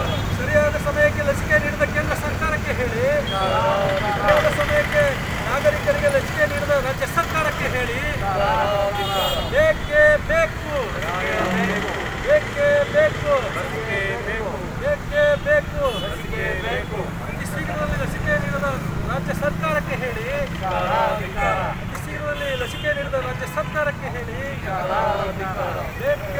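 A small group of protesters shouting slogans in chorus, phrase after phrase, over a steady hum of street traffic.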